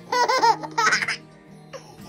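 A baby laughing in a string of quick high-pitched bursts during the first second, then one short laugh near the end, over soft background music.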